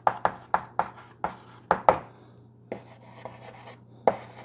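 Chalk writing on a blackboard: a quick run of sharp taps and strokes for about two seconds, then a softer, longer scratching near the end.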